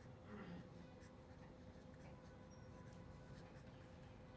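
Faint marker pen strokes on paper as a word is written out by hand, over a faint steady hum.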